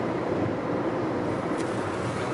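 Steady driving noise inside the cabin of a car moving at speed on a highway, with a continuous even rumble from the road and the car.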